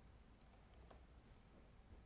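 Near silence with a few faint clicks of laptop keys being pressed, the clearest about a second in.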